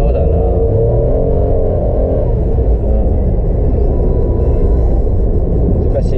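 Steady low rumble of road and engine noise inside a moving car's cabin. Over the first two seconds or so a wavering pitched sound rides over it.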